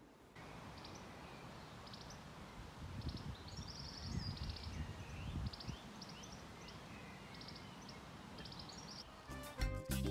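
Outdoor garden ambience with small birds singing: repeated short high chirps and trills over a faint steady background, with a low rumble that swells in the middle. Music starts near the end.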